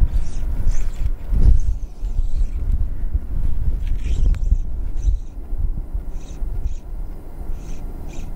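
Wind buffeting the action-camera microphone, a steady low rumble, with several faint short swishes of fly line being cast and stripped.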